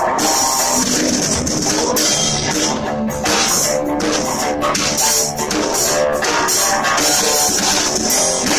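Live rock band: an electric guitar and a drum kit playing together, the cymbals struck steadily in time with the beat.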